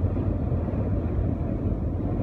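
Steady low rumble inside a moving truck's cab: engine and road noise, with strong gusting wind buffeting the truck.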